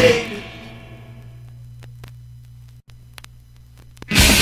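The silent groove between two songs on a 7-inch vinyl record: the last note of one punk song slides down and fades away over the first second, then a low steady hum with a few faint clicks, before the next song starts right at the end.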